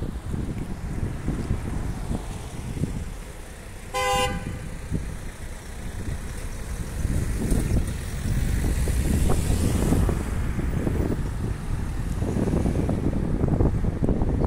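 A car horn gives one short toot about four seconds in, over the low rumble of road traffic that grows louder in the second half.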